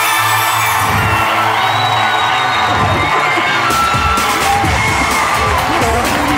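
Studio audience and the contestant's family cheering and whooping, loud and sustained, over the game show's music.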